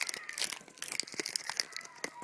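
Crinkling and rustling handling noise right at the microphone: a rapid, uneven run of crackles, loudest in the first half second.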